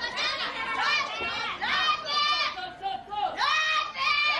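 Several high-pitched women's voices yelling and shouting over one another during a women's pro wrestling bout, with a brief lull about three seconds in.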